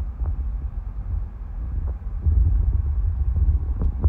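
Low, steady rumble of a car driving, heard from inside the cabin.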